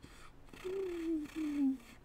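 A man imitating a UFO sound with his voice: a drawn-out, slowly falling 'wooo' in two parts. By his own account it is a messed-up attempt at the UFO sound.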